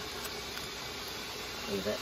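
Steady hiss of sausage pan juices simmering on an electric stovetop, with a voice starting near the end.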